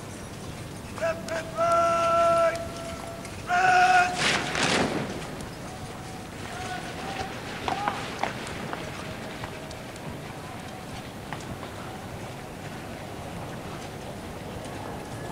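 Long, drawn-out parade-ground words of command shouted across the square, twice. The second is followed about four seconds in by a short, ragged crash of the guardsmen carrying out the drill movement together. After that comes a faint clatter of horses' hooves on the parade ground.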